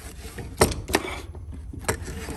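Sharp knocks of a metal tool handled against a chainsaw bar on a plywood bench: one about half a second in, another about a second in, and a third near the end.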